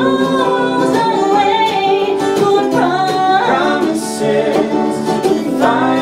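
Live acoustic folk song: a woman sings lead with a man's harmony voice, over strummed acoustic guitars and a mandolin.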